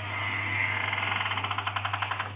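Liquid-nitrogen cryogenic storage tank opened and venting its cold vapour: a hiss with a fast rattling pulse, about a dozen pulses a second, swelling from about half a second in, over a steady low hum.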